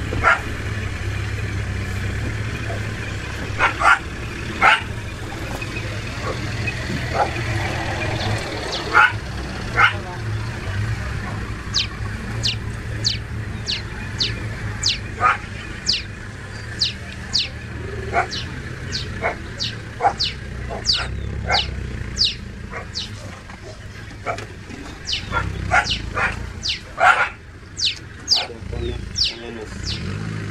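Short, sharp animal calls scattered through, then a run of quick high chirps at about two a second through the second half, all over a steady low engine hum.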